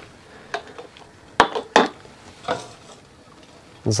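A few separate clinks and knocks of kitchenware being handled, a ladle against a steel pot and jars, the sharpest pair about a second and a half in, with fainter ones around them.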